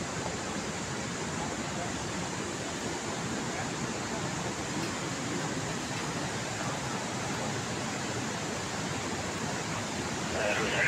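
A steady, even rushing noise that holds one level throughout, with no distinct events in it.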